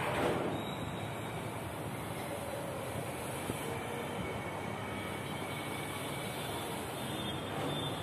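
Chalk scraping on a chalkboard as lines are drawn, with a brief louder stroke just after the start, over steady background noise.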